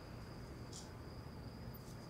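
Faint, steady, high-pitched cricket trill over a low room rumble, with a brief high hiss a little under a second in.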